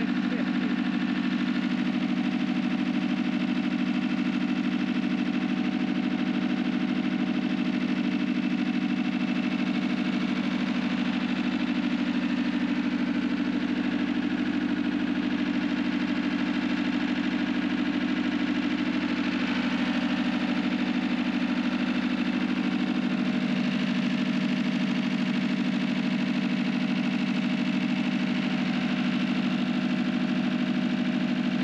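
Massey Ferguson 265 tractor's three-cylinder Perkins diesel engine idling steadily.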